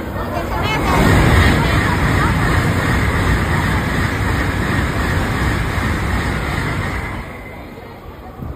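A Shinkansen train running past: a loud, even rush of noise that builds about a second in, holds for some six seconds and fades near the end, with people chattering.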